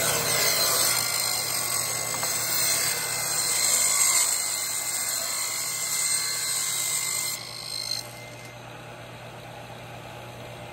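Table saw blade cutting along a wooden strip to make the second pass of a rabbet, which frees a loose offcut strip. The cut ends about seven and a half seconds in, and the saw then keeps running with no load, quieter.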